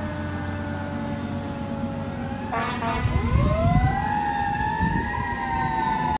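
Fire rescue squad truck's siren heard as it drives away: a steady, slowly falling siren tone, cut by a short horn blast about two and a half seconds in. The siren then winds back up in a slow rising glide and wails on over the low rumble of the truck and traffic.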